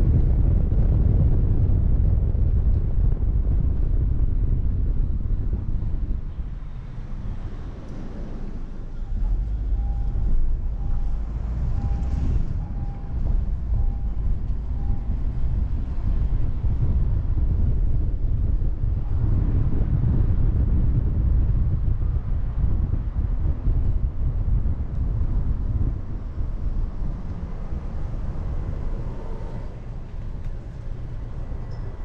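Car driving on city streets: low wind rumble on the camera's microphone and road noise, easing off for a few seconds about six seconds in. Around the middle comes a run of about seven short, evenly spaced beeps.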